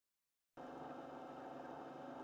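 About half a second of dead silence, then a faint, steady drone of many held tones that stays level without any attack or rhythm.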